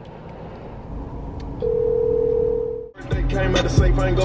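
A single steady electronic beep tone held for just over a second, cutting off sharply, followed about three seconds in by music with a heavy bass beat.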